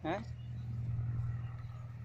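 A steady low machine hum, like a motor running, with a short spoken word at the start.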